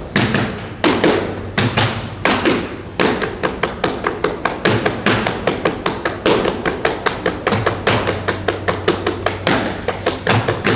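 Rhythmic percussive strikes in a Kathak performance, sharp taps and thumps. They come about one every 0.7 s at first, then quicken after about three seconds into a dense, even run of about four a second.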